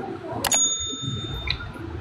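Live-stream app sound effect: a quick double click about half a second in, then a bright bell-like ding that rings for about a second and ends with a short click. It follows a run of clicks about once a second, a countdown that marks the end of a live match.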